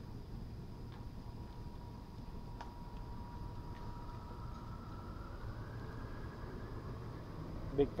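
Quiet outdoor background with a steady low rumble and a faint thin whine that holds one pitch and then rises slowly in the second half, with a few faint ticks.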